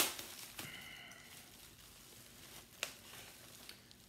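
Plastic bubble wrap being handled and unfolded by hand: a sharp crinkling crackle at the start, then faint rustling and a single click about three seconds in.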